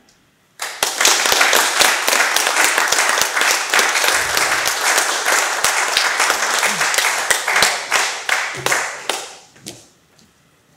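Applause from a small audience, starting about half a second in, holding for some eight seconds and fading away near the end.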